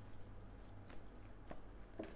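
Tarot cards being handled and shuffled faintly, with a few soft card clicks.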